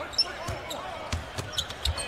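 A basketball bouncing on a hardwood court, a handful of irregular thuds, over a low arena crowd murmur.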